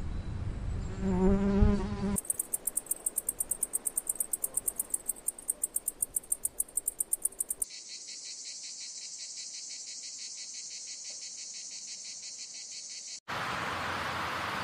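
A bee buzzing close up for about two seconds. Then insects chirp in high pulses, about five or six a second, which change to a steady high trill. Near the end it cuts off abruptly to a different outdoor background.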